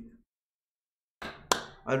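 A man's voice trails off into a second of dead silence, then a single sharp click sounds about one and a half seconds in, just before he starts speaking again.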